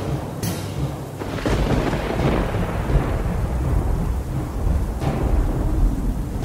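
Thunder: a long, low rolling rumble that builds about a second and a half in and swells before easing, with a beat of music strokes coming back in near the end.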